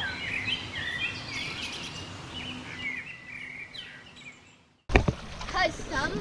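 Small birds chirping over faint outdoor ambience, with short rising and falling calls. The sound cuts out about four and a half seconds in, and a noisier outdoor recording starts with a click.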